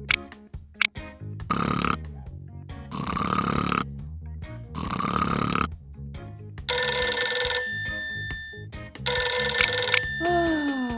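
Three slow snores from a sleeping cartoon character, then a telephone ringing twice, each ring about a second long and the loudest sound here, over soft background music.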